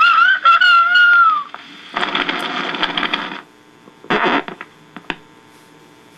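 Recorded rooster crow played from a See 'n Say toy's sound disc on a record player at 78 RPM: one gliding crow that rises and then falls, lasting about a second and a half. It is followed by about a second and a half of hissy noise and, near the end, a short burst and a click.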